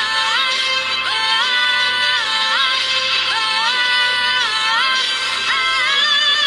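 Song with a high wordless vocal that slides up and holds a note again and again, over a pulsing low backing.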